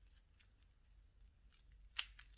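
Faint handling noise and small clicks as a shoulder puppet's hand control is worked, ending in one sharp click.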